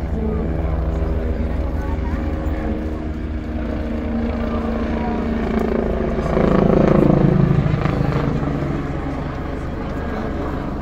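AgustaWestland A109 helicopter flying a display overhead: a steady rotor beat with turbine hum that grows louder about six seconds in as it passes close overhead, then eases off near the end.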